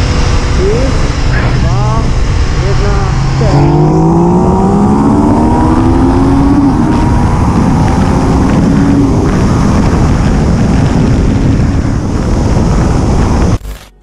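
Yamaha MT-09's CP3 three-cylinder engine, fitted with an Akrapovič exhaust, held steady and then pulling hard under full throttle in a second-gear roll-on. Its pitch rises steadily for about five seconds from roughly three and a half seconds in, under heavy wind rush on the onboard microphone.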